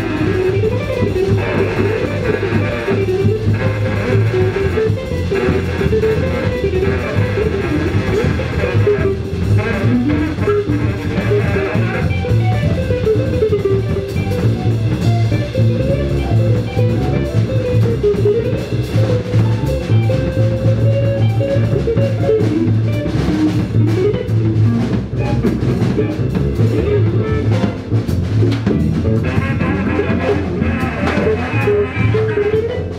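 Live band of electric guitar, upright double bass, drum kit and saxophone playing an instrumental piece, with a wandering melodic line over a steady bass and drums.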